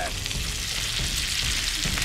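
Woven bacon strips sizzling steadily on a hot electric griddle right after being flipped, over a low rumble.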